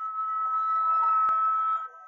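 A single held, breathy, whistle-like note, steady in pitch for almost two seconds and then cutting off shortly before the end.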